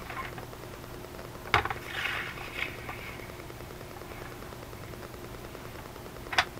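Paper being handled on a craft table while a paper trimmer is set out, with one sharp knock about a second and a half in, then a short rustling swish of paper.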